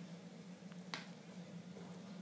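A few faint, short clicks, the sharpest about a second in, over a low steady hum.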